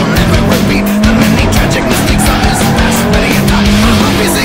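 Loud hard-rock music with a steady beat, mixed over a Subaru Impreza rally car's engine running hard as the car slides through a turn.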